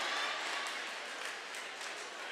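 Audience applause in a theatre, a dense patter of clapping that fades slightly.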